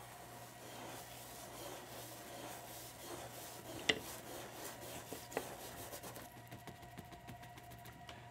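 Faint scratchy rubbing of paintbrushes stroking across stretched canvases, with two light clicks about a second and a half apart near the middle.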